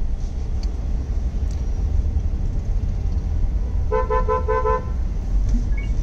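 Low steady rumble of slow road traffic heard from inside a car, with a rapid string of short car-horn beeps about four seconds in, lasting under a second.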